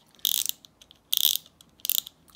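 Alvey Orbiter SR-100 spinning reel's spool and drag knob twisted by hand, giving three short bursts of rapid ratcheting clicks.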